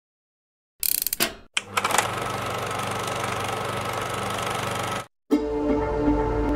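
Electronic glitch sound design for a trailer: a few sharp crackles, then a steady, rapidly pulsing digital buzz that cuts off suddenly, followed by a low music drone near the end.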